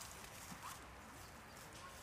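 Faint rustling of hay and light knocks from goats moving in straw and feeding at a metal hay rack.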